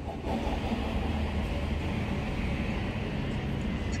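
Steady outdoor city traffic rumble with a low drone and no distinct events.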